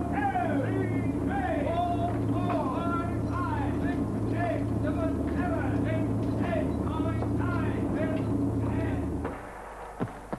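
A steady low mechanical drone with men's voices shouting indistinctly over it, inside a mock-up aircraft fuselage used for parachute training. The drone and voices cut off suddenly near the end.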